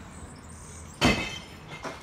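A single loud, sharp bang about a second in that rings out briefly, followed by a lighter knock near the end.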